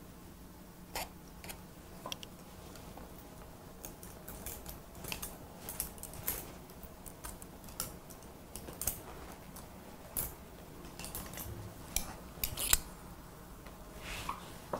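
Hair-cutting scissors snipping through wet hair, with a comb drawn through it in between: irregular short crisp snips and clicks, the loudest near the end, over a faint steady low hum.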